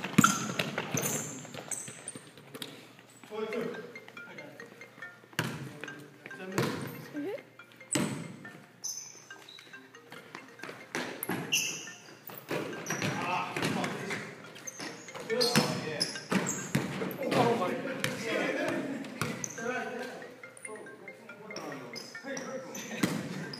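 Basketball bouncing on a hardwood gym floor during a game, irregular sharp thuds, with short high squeaks from sneakers and players' indistinct voices.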